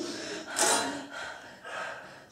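A person's sharp, breathy exhale about half a second in, followed by two fainter breaths.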